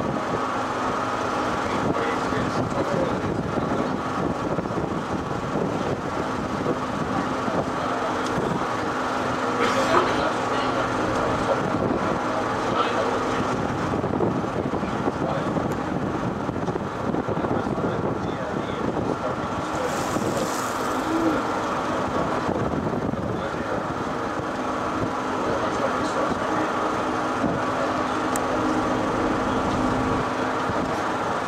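A river cruise boat's engine running steadily under way, a constant drone heard from inside the cabin.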